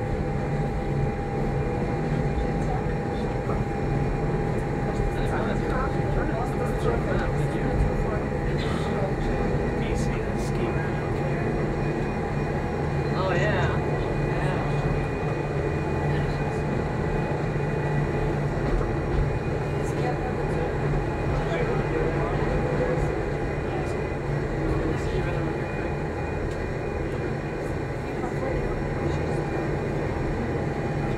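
Electric rack-railway train of the Gornergratbahn, Abt rack system, running downhill, heard from inside the cab: a steady drone from motors and running gear, with a constant whine and scattered light clicks from the track.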